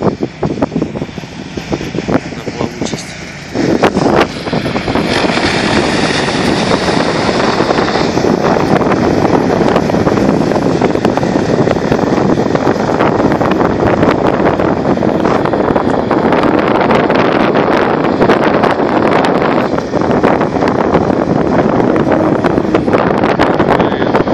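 A Borus SCOUT-PRO XL amphibious all-terrain vehicle running as it drives through shallow water, its engine and churning tracked wheels throwing up spray, with wind on the microphone. About three and a half seconds in, the sound jumps to a louder, dense, steady noise that holds from then on.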